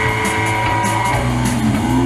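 Live rock band playing loud: electric guitars holding sustained notes, one bending down and back up near the end, over electric bass and a drum kit with cymbals.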